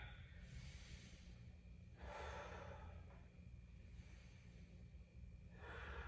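Faint, slow human breathing: a long breath drawn in, then a breath let out about two seconds in, as a person holds a seated forward-fold stretch.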